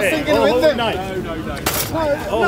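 Several people's voices overlapping, with a brief hiss near the end.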